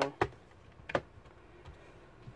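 Two sharp clicks, one just after the start and one about a second in, then a faint tap, as the metal hard-drive caddy is pressed and seated into a laptop's drive bay.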